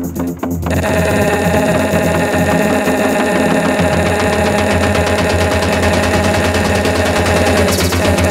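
Future rave electronic dance music played live in a DJ set. A pulsing, chopped passage gives way about a second in to a dense, sustained wall of synths over a steady bass, and a fast rhythmic high pattern comes back in near the end.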